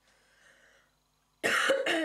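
A woman coughs, suddenly and loudly, about a second and a half in, with a falling voiced tail at the end.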